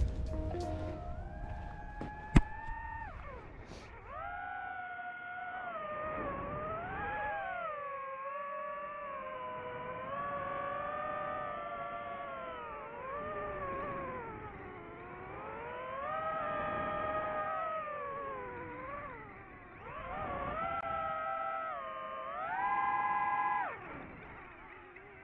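DJI FPV drone's motors whining, the pitch sweeping up and down continuously as the throttle changes, with a short dip a few seconds before the end and then a climb. A sharp click about two seconds in.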